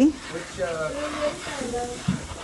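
Voices talking in the background, softer than the nearby speech and too unclear to make out as words.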